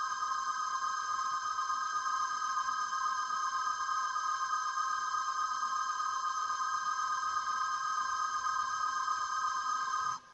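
A sustained electronic tone: several steady pitches held together without change, cutting off abruptly at the very end.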